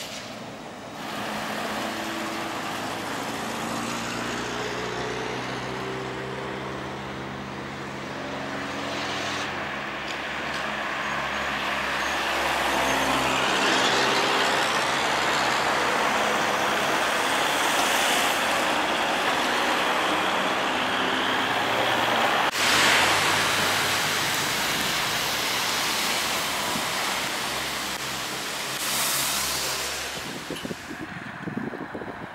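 Trolleybuses and street traffic: a steady electric drive hum whose tones shift in pitch, over tyre and road noise. The noise swells louder through the middle stretch as vehicles pass, with a sudden break a little past two-thirds of the way through.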